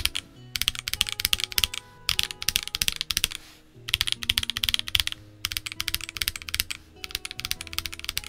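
Fast typing on a stock CIY GAS67 wireless gasket-mount mechanical keyboard. The clicks come in runs of a second or so with brief pauses between them.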